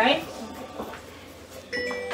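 A phone ringtone starts suddenly near the end: a melody of steady, held tones.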